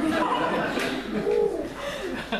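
A man's voice making drawn-out, wavering vocal sounds, with one briefly held note about halfway through.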